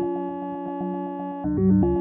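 Buchla-format modular synthesizer patch through a 1979 Digital Resonator in modal resonator mode, its pitch stepped by a 16-step sequence and its strum input fired by a stream of pulses. A resonant pitched note is held with a fast pinging flutter over it, then steps to lower notes about a second and a half in.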